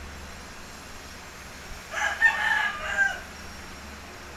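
A rooster crowing once, starting about two seconds in and lasting just over a second, over a faint steady low hum.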